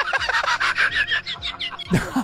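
A person laughing hard, a quick unbroken run of short, high 'ha' sounds.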